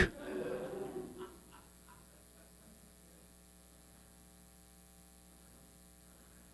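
A quiet pause filled by a faint, steady electrical hum. There is a little faint sound in the first second that then dies away.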